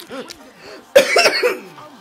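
A person coughing in a short burst of several coughs about a second in, the loudest sound here; it sounds like choking a little on orange while eating fast. A song plays faintly behind it.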